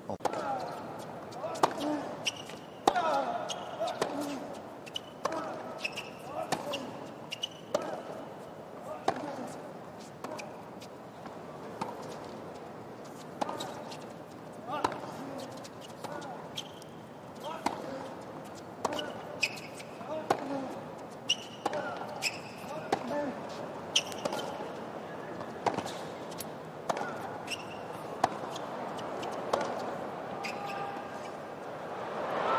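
Tennis rally on a hard court: racket strikes on the ball at roughly one-second intervals, with players grunting on some shots, over a steady murmur from the stadium crowd.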